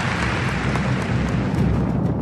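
A steady rumble with a hiss over it, a sci-fi film sound effect for a glowing energy burst.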